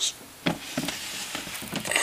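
Hands handling a clear plastic storage drawer: soft knocks and rustles, with one sharper knock about half a second in.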